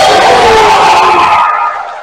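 A loud, distorted shout close to the microphone, falling in pitch and fading out after about a second and a half.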